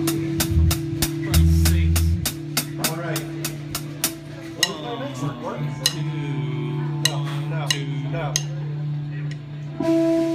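Live band instruments: a held low note sounds under a fast run of even ticks, about five a second. The ticks stop about four and a half seconds in, leaving sliding tones and a few scattered clicks.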